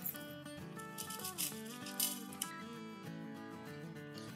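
Soft background music with a few faint light clicks.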